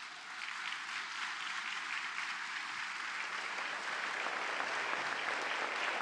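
Audience applauding, building over the first second and then holding steady.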